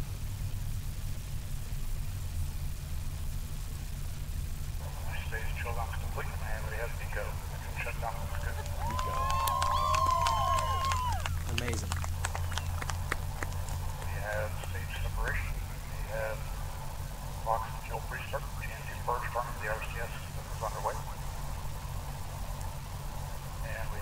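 Muffled, indistinct voices in the background over a steady low hum, with a brief wavering, whistle-like pitched tone about nine to eleven seconds in.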